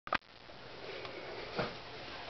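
A sharp click right at the start, then faint rustling and a soft footstep about one and a half seconds in as a person steps up close to the camera.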